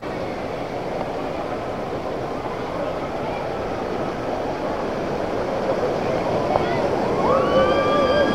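Rushing whitewater of a river rapid, a steady wash that slowly grows louder, with voices calling out near the end.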